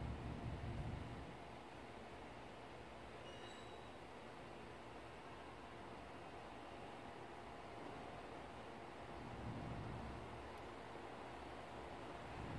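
Faint room tone: a low hum with light hiss, a little louder in the first second and again about nine to ten seconds in.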